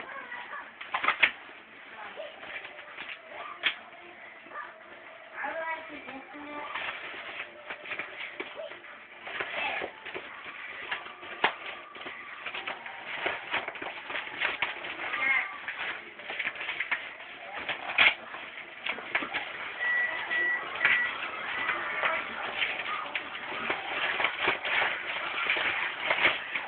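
A thick phone book being torn in half by hand: crackling rips of paper in fits and starts, getting busier and louder toward the end, with a voice now and then.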